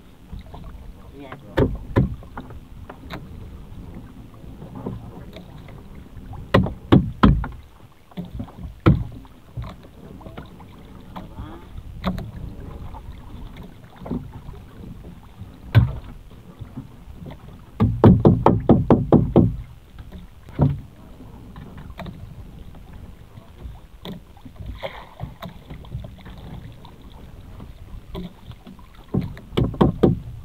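Irregular knocks and thumps over a steady low rumble, with a quick run of about a dozen taps near the middle.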